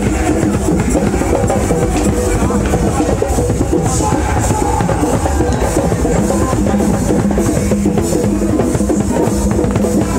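Loud music driven by drums and percussion, playing a steady beat without a break.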